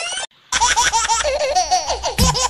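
A rising pitch sweep cuts off just after the start, and after a brief silence rapid, very high-pitched giggling laughter begins about half a second in and carries on.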